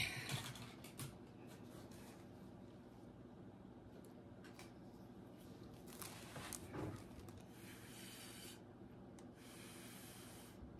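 Quiet room tone with faint scattered clicks and rustles of hands working at the painting table, and a brief louder sound about six to seven seconds in.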